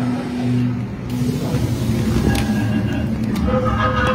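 Eerie ambient soundtrack of a horror exhibit: a low rumbling drone with held low tones that break off about a second in. Higher sustained tones build near the end.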